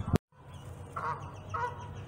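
The audio drops out for a moment just after the start, then a bird honks three times, short calls a little over half a second apart.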